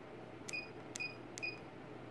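Standing-desk control keypad beeping three times, short high beeps about half a second apart, each with a faint click, as the up button is pressed.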